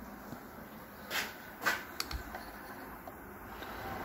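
Faint workshop handling noise: a few light knocks and taps, about a second in and again around the middle, as a tool is fetched and handled, over low room tone.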